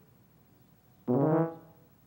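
A single tuba note, announced as a high note, starts about a second in, is held for about half a second and then fades away.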